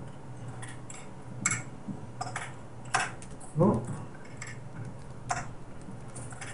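Irregular sharp clicks and taps of plastic and metal parts as hands work cables and connectors inside an open desktop PC case, over a faint steady low hum.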